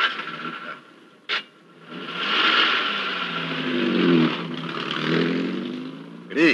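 A car engine starting and revving as the car pulls away, its pitch rising and falling. A short click comes about a second in, before it.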